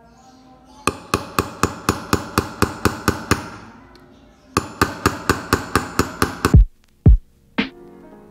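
Light hammer taps driving a nail through the bottom of a plastic tub to punch a drainage hole, about four taps a second in two runs with a short pause between. Background music runs underneath, and deep falling thumps start near the end.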